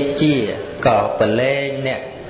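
A Buddhist monk's voice chanting in a sing-song recitation: two drawn-out phrases with long held notes, set within his sermon.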